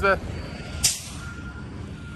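A semi-truck's air brakes let out one short, sharp hiss about a second in, over the steady low rumble of its diesel engine. A faint backup alarm beeps on and off.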